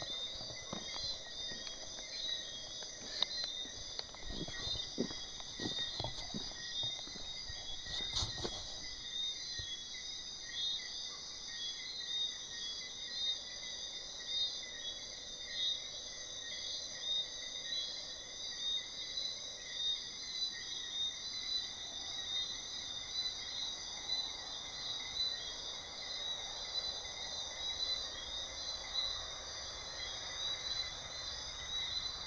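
Chorus of crickets and other night insects: several steady, shrill trills layered at different high pitches, pulsing rapidly throughout. A few faint knocks and clicks come in the first several seconds.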